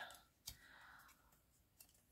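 Near silence: a faint click about half a second in, a soft brief rustle after it and a tiny tick near the end, from a small paper flower being handled and its petals curled with a wooden tool.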